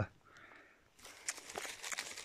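Quiet for about a second, then light crackling and rustling of dry pine needles and twigs being disturbed in the undergrowth.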